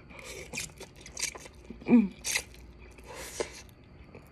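A person eating instant noodles: several short slurps and mouth noises as a forkful of noodles is sucked in and chewed, the longest slurp coming in the second half, with a brief 'mm' about halfway through.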